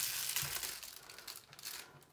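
Clear plastic bag crinkling as it is handled, loudest at the start and fading over the first second, with a few fainter rustles after.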